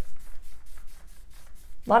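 Faint scratchy rubbing of a pointer tip moving against a paper chart, a quick run of light strokes.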